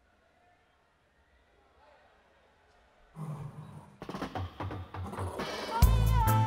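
Near silence for about three seconds, then a live reggae band starts a song: soft low pitched notes come in first, more instruments join a second later, and the drum kit and full band are playing near the end.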